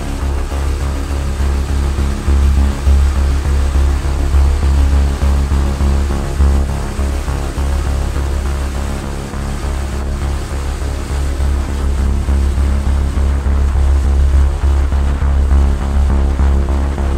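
A David Brown tractor's engine running at a steady road speed, a constant drone with a deep, uneven rumble beneath it, heard from the cab.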